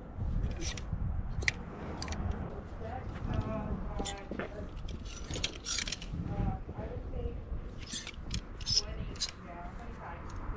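Plastic clothes hangers clicking and sliding along a metal rack rail as garments are pushed aside, in a run of irregular sharp clicks.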